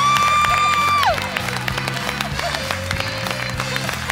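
Upbeat background music with a steady beat under audience clapping and cheering. In the first second a single high note is held, sliding up into it and dropping away at the end.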